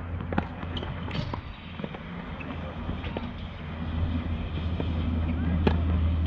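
Outdoor tennis-court ambience: a steady low rumble that swells over the second half, with a few sharp knocks of tennis balls being struck and faint distant voices.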